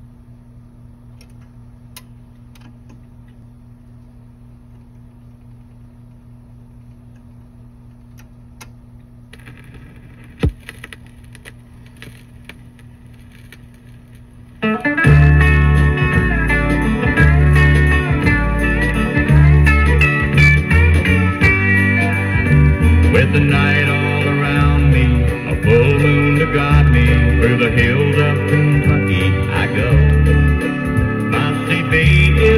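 A 1970s country 45 played on a turntable and recorded direct. For about fifteen seconds there is only a quiet, low, steady hum with faint clicks and one sharp click about ten seconds in. Then the band comes in loudly with guitar and bass.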